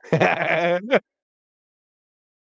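A man's drawn-out, wavering laugh lasting about a second, then the audio cuts off abruptly to dead silence.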